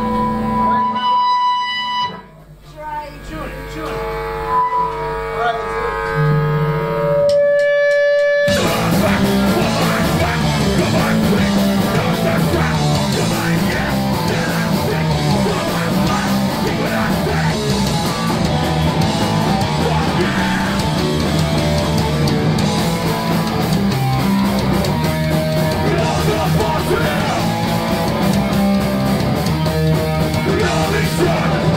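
Punk band playing live, electric guitars amplified through stage amps. For the first eight seconds or so there are sparse, held guitar notes with gaps between them, then the full band crashes in about eight seconds in, with distorted guitars, bass and drums playing loud and dense.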